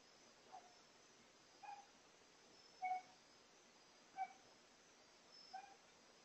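An animal's short, pitched cries repeated evenly, five in a row about a second apart, like a dog's whimpering yips, faint over a quiet night background.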